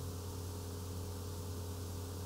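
Steady low electrical hum with a faint even hiss: the narration recording's background noise, with no other events.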